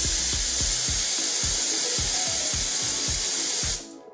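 Compressed air jetting from a 3D-printed sonic nozzle, one cut off at the throat with no diverging section: a loud, steady hiss that stops abruptly near the end.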